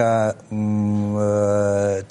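A man's voice says a short syllable, then holds one long vowel at a steady pitch for about a second and a half, like a drawn-out hesitation 'eeh' in the middle of speaking.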